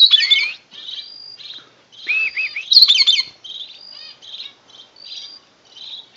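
Several birds chirping and whistling in an aviary, with repeated short high notes and two louder bursts of twittering, one at the very start and one about two to three seconds in.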